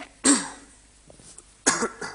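A man coughing twice, about a second and a half apart.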